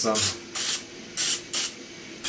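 Can of cooking spray hissing in four short sprays as it is pressed in quick pulses over silicone candy molds.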